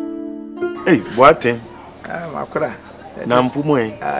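Held music tones end about half a second in. Then a steady, high chirring of crickets starts abruptly and runs on, with men's voices over it.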